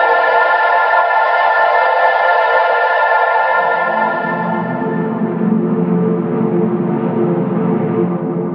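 Saxophone played through long reverb and delay plugins (Valhalla VintageVerb, Valhalla Room, Nembrini Audio delay), its held notes blurring into a sustained ambient wash. About three and a half seconds in, a lower tone swells in beneath as the higher notes fade.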